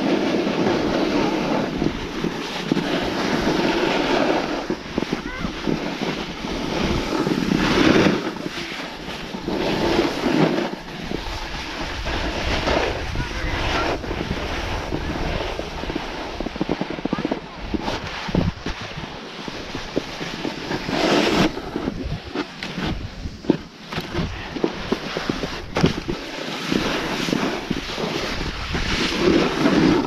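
Snowboard sliding and scraping over packed snow, swelling and fading with each turn, with wind buffeting the camera microphone.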